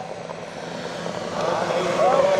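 Engine of a Range Rover mobile starting-gate car running steadily as it drives past at speed, leading the trotting harness horses away at the start of the race. A calling voice rises over it near the end.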